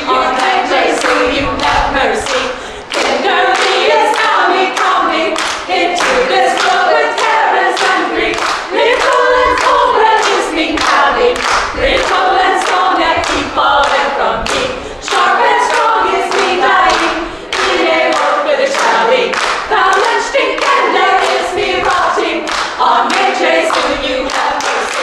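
Women's choir singing unaccompanied, with the singers clapping their hands in a steady rhythm on the beat.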